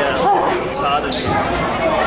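A basketball bouncing on a wooden gym floor during play, with spectators' voices around it.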